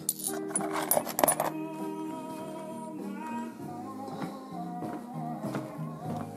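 Background music with guitar. In the first second and a half, stones click and clatter against each other as a hand stirs through a plastic tub of rocks.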